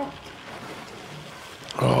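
Radiation dosimeters in the drama's soundtrack crackling so densely that they make a steady hiss: a pinned meter in a high-radiation area. A man's voice comes in near the end.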